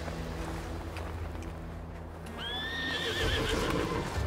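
A horse whinnies once, about two seconds in: a call that rises and then wavers, lasting about a second. It comes over a low, steady drone.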